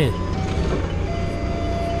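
Doosan forklift engine idling with a steady low rumble, heard inside the cab, with faint background music under it.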